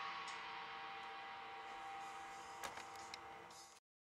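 Drum kit cymbals ringing out faintly and fading after the song's final hit, with a couple of light clicks about two and a half to three seconds in; the sound then cuts off suddenly.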